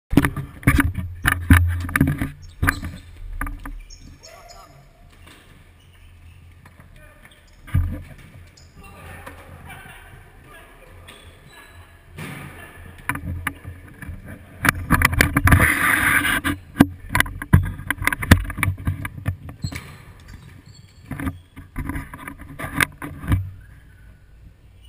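A futsal game in a reverberant indoor hall: repeated sharp knocks of the ball being kicked and bouncing off the hard court, with players' voices calling out, busiest a little past the middle.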